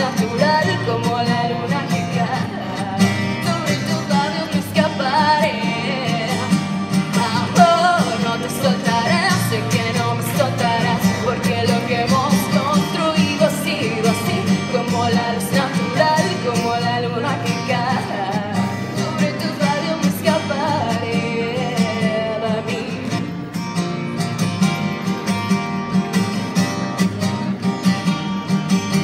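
A woman singing a pop song into a microphone, accompanied by a strummed acoustic guitar, performed live.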